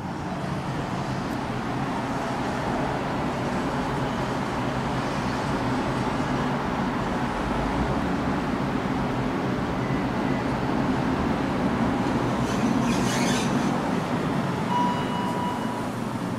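Steady low rumble of traffic and ventilation echoing in a parking garage. Near the end a single steady electronic tone sounds for about a second: the elevator's arrival chime.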